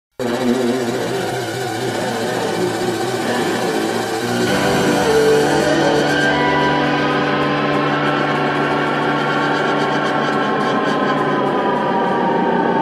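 Live band's intro on stage over festival crowd noise: dense at first, then from about four seconds in a sustained low drone with a high electric guitar note that slowly bends down in pitch as the guitarist turns a tuning peg.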